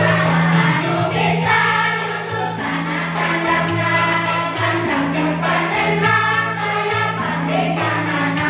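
A class of schoolchildren singing a song together in unison, over an instrumental accompaniment with a low bass line.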